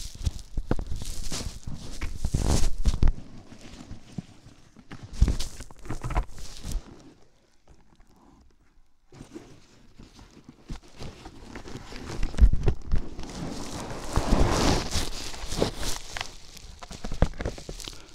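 Close-up handling noise on a lavalier microphone: rustling, scraping and irregular knocks as the mic is worked into the padding of a full-face motorcycle helmet and the helmet is pulled on. There is a quiet lull midway, then a louder stretch of rubbing.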